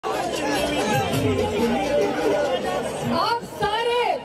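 Speech only: several voices talking over one another, then a single voice speaking more clearly near the end.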